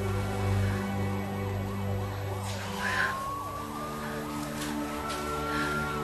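Emergency vehicle siren wailing, with a quickly wavering pitch and then a long slow rise from about halfway, over held notes of a soft film score.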